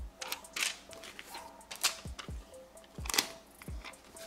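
Hands peeling a paper seal off its backing and pressing it onto a cardboard mailing box: several sharp paper crackles and a few dull taps on the box, with faint music underneath.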